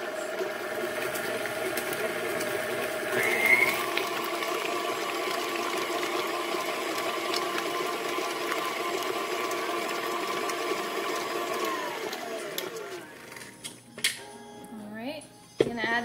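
Electric stand mixer running with its flat beater churning butter-and-egg cookie dough in a stainless bowl. Its steady motor whine steps up in pitch about three seconds in as the speed is raised, then winds down and stops near the end, followed by a couple of sharp clicks.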